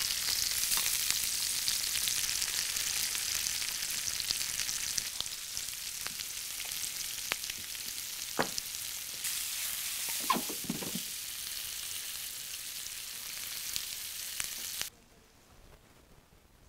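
Avocado wedges and red and yellow bell pepper strips sizzling as they fry in a pan, with a few light clicks scattered through. The sizzle cuts off abruptly near the end.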